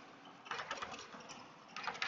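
Chalk writing on a chalkboard: quick runs of taps and scratches as letters are formed. One run comes about half a second in and another near the end.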